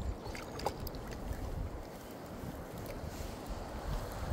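Shallow river water swirling and lapping around a landing net as a chub is drawn in through the current, with a low wind rumble on the microphone.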